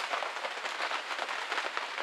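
Rain pattering steadily on a tarpaulin shelter overhead, a dense, even patter of many small drops.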